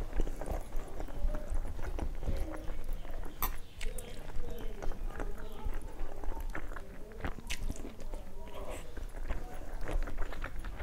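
Close-miked chewing and wet mouth sounds of a person eating rice and curry by hand, with irregular small clicks and squelches as fingers mix rice on a steel plate.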